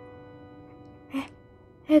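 Soft background music holding a sustained chord that slowly fades, with a short gasp about a second in.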